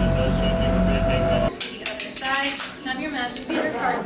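A passenger boat's engine running with a steady hum, cut off abruptly about a second and a half in. Then people's voices and chatter in a crowded room.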